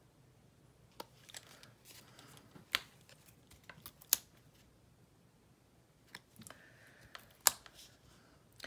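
Quiet handling sounds of foam adhesive dots (Stampin' Up! Dimensionals) being lifted off their paper backing sheet with a pointed craft tool and pressed onto cardstock: faint rustling of paper broken by about five sharp little clicks, spread out over several seconds.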